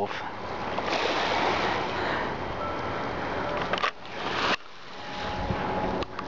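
Lake breeze blowing on the microphone with gentle lake waves lapping at the shore: a steady rush that drops away briefly twice in the second half.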